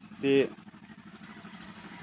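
A man's voice says a single short word, followed by faint, steady background noise.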